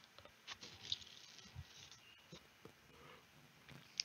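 Near silence: faint room tone with a few soft, short clicks.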